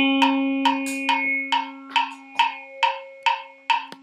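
Krar, the Eritrean and Ethiopian bowl lyre, played alone. A low string note rings on and slowly fades while short, clipped plucks repeat evenly a little over twice a second, each sounding woody and knock-like, and the whole dies away toward the end.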